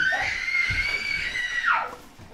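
A small child's long, high-pitched squeal that rises at the start, holds steady for over a second, then slides down in pitch and fades near the end.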